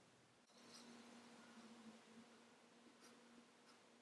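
Near silence: faint room tone with a low steady hum that starts about half a second in.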